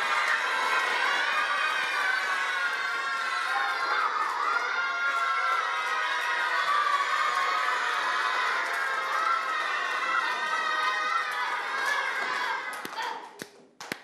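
A group of young boys cheering and shouting together while clapping their hands, many voices at once, dying away near the end.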